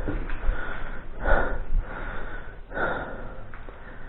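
A man breathing close to the microphone: two loud, breathy breaths about a second and a half apart, over a low rumble of camera handling.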